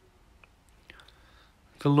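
A quiet pause with a few faint mouth clicks and a soft breath, then a man's voice starts speaking near the end.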